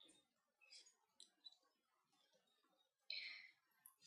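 Near silence: room tone with a few faint ticks and a brief soft noise a little after three seconds in.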